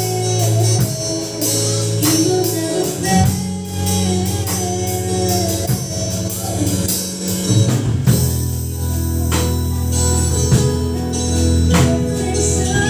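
A woman singing a worship song into a microphone over an accompaniment of guitar, bass and drums, amplified through a PA.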